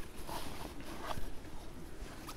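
Hands rummaging inside a canvas haversack pocket: fabric and gear rustling irregularly, with a few faint small knocks.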